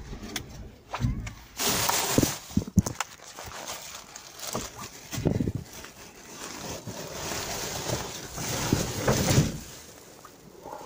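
Black plastic bin bags and wrapping paper rustling and crinkling as rubbish is rummaged through by hand, in irregular bursts with a few sharp clicks about three seconds in.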